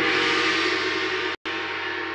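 A sudden, gong-like ringing hit used as a transition sound effect. It sounds several tones at once, fades slowly, and cuts out for an instant about one and a half seconds in.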